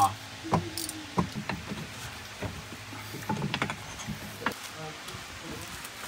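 Scattered light clicks and knocks of hand tools and metal parts being worked on under a golf cart, some ringing briefly, a few at a time.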